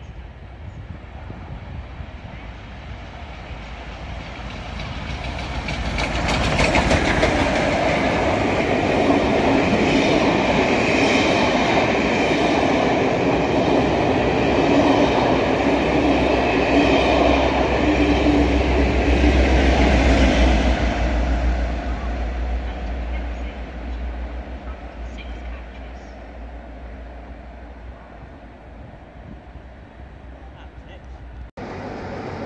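A passenger train passing close by on the platform road, its coaches running over the rails. The noise builds over the first few seconds, stays loud for about fifteen seconds, then dies away as the train draws off.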